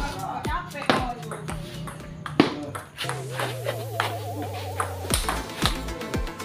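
Table tennis ball clicking at irregular intervals off bats and table during a rally, with background music and a wavering singing voice running underneath.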